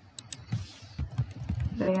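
Typing on a computer keyboard: a quick string of keystrokes, starting with two sharp clicks.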